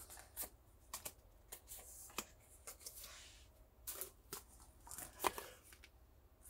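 Pokémon trading cards being handled: faint, scattered flicks and brief slides of card stock as cards are leafed through and set down, with a sharper snap about five seconds in.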